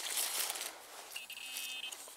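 Loose soil and dry leaves rustling as the freshly dug hole is searched, then, just past the middle, a short high buzzing tone lasting under a second: a metal detector's signal sounding over the target.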